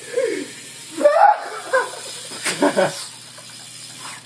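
A few people shouting and whooping in excitement, with laughter, in several short bursts.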